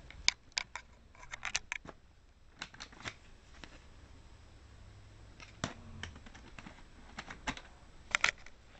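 Irregular sharp plastic clicks and taps from hands handling a 3.5-inch floppy disk around a laptop, in small clusters with short pauses between them.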